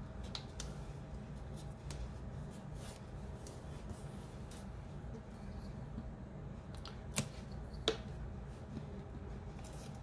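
Quiet handling of paper on a cardboard cereal-box cover: small rustles and taps as paper strips are pressed down, with two sharp clicks about seven and eight seconds in, over a low steady hum.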